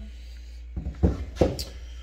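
Snap-on air hammer set down on a wooden workbench: a few short knocks, the loudest about a second in and another just after.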